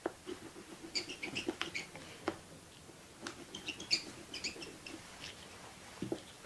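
Oil pastel being worked on paper by hand: soft scratchy rubbing strokes and light taps, with two clusters of short, high, squeaky chirps, one about a second in and one near the middle.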